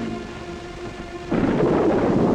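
A held music chord dies away, then about a second and a half in a loud thunder rumble breaks in suddenly and keeps rolling: a storm sound effect on an old TV soundtrack.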